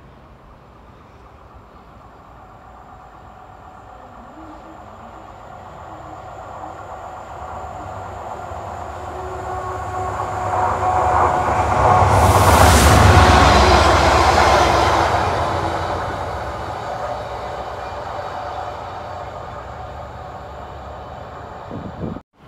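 Class 68 diesel-electric locomotive passing through a station: its engine and wheels on the rails grow from faint to loud, are loudest about halfway through as it goes by, then fade away.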